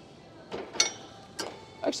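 Cable machine's steel weight stack clicking during a tricep pushdown set: one sharp metallic clink with a brief ring a little under a second in, then a softer knock about half a second later.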